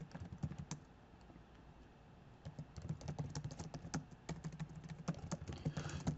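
Typing on a computer keyboard: quick runs of key clicks, breaking off for about a second and a half near the start, then resuming.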